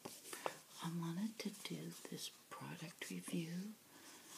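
A woman speaking softly, in a low, gentle voice, with a few faint clicks between the words.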